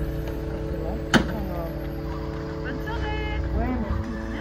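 Steady hum of an idling engine under faint voices, with one sharp click about a second in.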